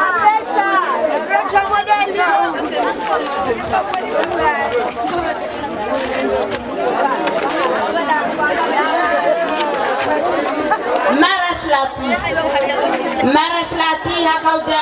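Several people talking over one another.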